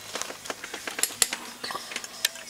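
Camera handling noise: a run of light clicks and knocks, the two sharpest a little past a second in.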